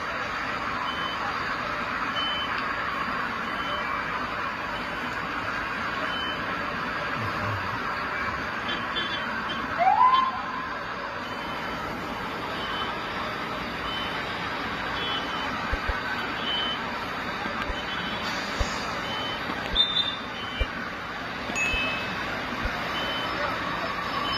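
Steady city street traffic noise, with a brief, louder rising sound about ten seconds in and a few faint short high tones scattered through.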